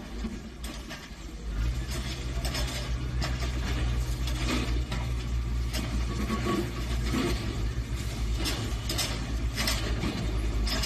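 Excavator's diesel engine running steadily, growing louder about a second and a half in, with scattered knocks and clatter as its bucket breaks the concrete of a building frame.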